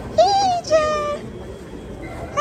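A baby's high-pitched vocalizing: two short squealing coos, the first rising and falling, the second held level.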